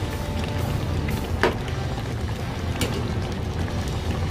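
A spatula clicks twice against the pan of simmering kare-kare, about a second and a half in and again near three seconds, over a steady low rumble.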